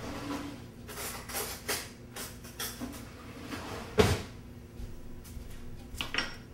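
Knocks and clatters of a kitchen cabinet being opened and shut while utensils are fetched; about half a dozen short knocks, the loudest and sharpest about four seconds in.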